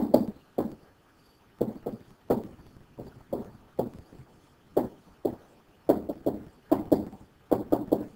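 A pen stylus tapping and knocking against a writing surface as words are handwritten, in a string of short irregular knocks, about one or two a second.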